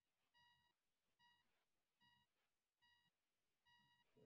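Near silence, with very faint short electronic beeps repeating at uneven intervals, roughly one a second.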